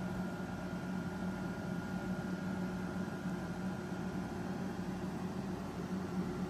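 Steady low electrical hum with an even hiss and a faint, thin high tone above it, unchanging throughout: background room noise with no other event.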